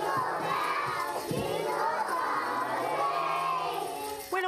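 A group of three- and four-year-old preschoolers singing a Christmas song together, many young voices at once.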